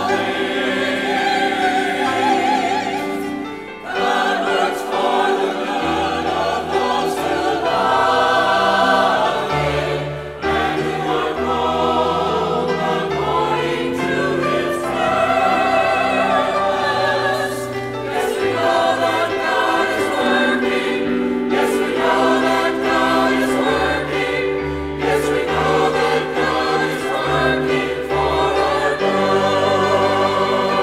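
Church choir singing an anthem in parts, mixed voices over sustained instrumental accompaniment, with short pauses between phrases about four and ten seconds in.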